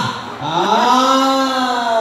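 A voice over a microphone and PA speakers holding one long sung note, sliding up at the start and then held steady.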